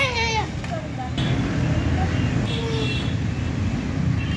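A young child's high, drawn-out vocal sound gliding down and trailing off in the first half second, then a steady low rumble of outdoor background noise with faint voices.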